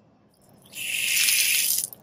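Water gushing from a newly installed SharkBite outdoor hose faucet, opened to test it. The rush starts about half a second in and cuts off sharply near the end as the faucet is shut again.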